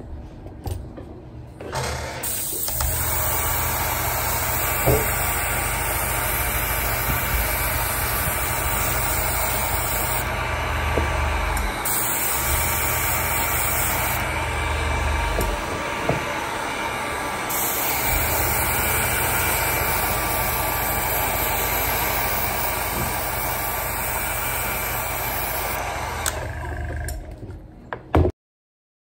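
Handheld electric heat gun running steadily, its fan blowing hot air over a leather sneaker. It switches on about two seconds in, its tone shifts a few times in the middle, and it cuts off just before the end.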